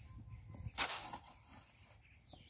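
A hoe blade scraping into loose garden soil, one short gritty burst about a second in.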